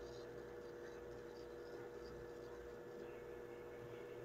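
Faint steady hum holding two even tones, with no other events.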